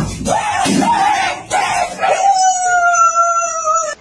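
Loud cries: several short wavering calls, then one long held call of about two seconds that sinks slightly in pitch and stops just before the end.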